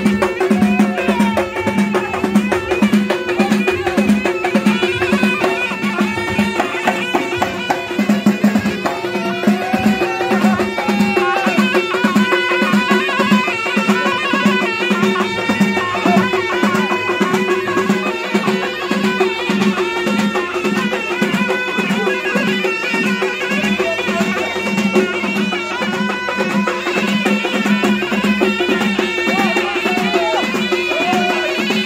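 Eastern Moroccan folk music: bendir frame drums keep a steady beat under a wind pipe that plays a held, continuous melody over a drone.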